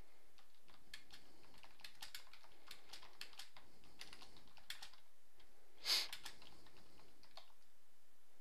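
Irregular typing on a computer keyboard, a quick patter of key clicks, with one louder brief noise about six seconds in.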